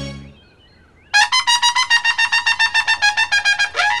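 Short background-music cue: after a brief quiet, a trumpet-like horn comes in about a second in and holds one pitch in rapid repeated pulses, about eight a second, stopping just before the end.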